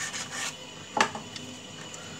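A deck of Bicycle playing cards sliding out of its cardboard tuck box: soft paper-on-card rubbing, with one sharper snap about a second in.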